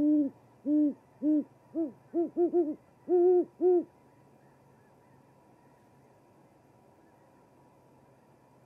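A great horned owl hooting: about ten deep hoots in the first four seconds, coming quicker in the middle of the run and rising a little in pitch toward the end, then stopping. A faint steady electrical hum runs underneath.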